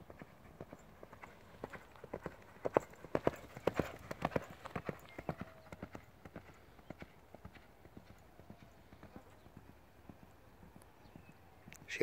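Hoofbeats of a ridden horse moving at speed along a sand track. They grow louder as it passes, loudest about three to five seconds in, then fade as it moves away.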